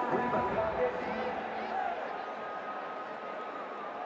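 Cricket stadium crowd noise with indistinct voices, and stadium music that fades out over the first second or two.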